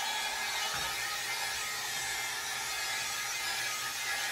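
Hot air brush running steadily on its high setting, a continuous motor whir and rush of air as it is worked through damp synthetic wig fibers.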